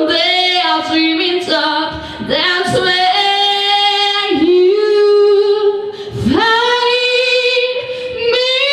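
Solo female voice singing a cappella into a handheld microphone, without accompaniment. She holds long, drawn-out notes, breaks briefly about six seconds in, then slides up into another long held note.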